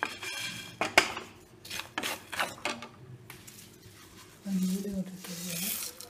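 Wooden spatula scraping and knocking against a metal pan as dry-roasting coriander seeds and whole spices are stirred, in quick irregular strokes.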